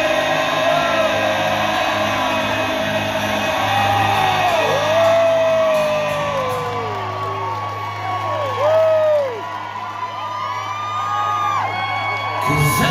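Live acoustic guitar music playing steadily, with audience members whooping and yelling over it in long falling calls through the middle.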